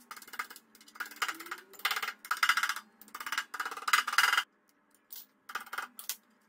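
A run of about ten short scraping knocks as a black liner panel and its rubber edge trim are pressed and worked into the opening cut in a steel gas cylinder, with a pause and two shorter knocks near the end.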